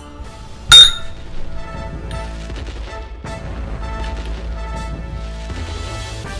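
A single sharp clink with a short ring, under a second in, as the sweeper's handle tubes knock together during assembly. Steady background music plays throughout.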